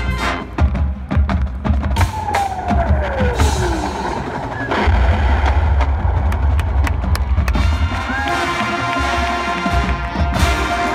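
Marching band performing a percussion-driven passage: drum hits and sharp wood-block-like clicks, with a tone sliding downward about two seconds in and a sustained low rumble through the middle.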